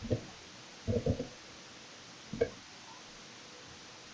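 Four soft, muffled taps spread over about two and a half seconds, two of them close together: keys pressed on a computer keyboard as a short PIN is typed in.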